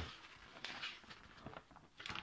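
Faint rustling and crinkling of a plastic packaging bag and a folded paper instruction sheet being handled, loudest a little after half a second in.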